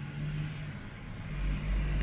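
A low rumble that swells about halfway through, over a steady low hum.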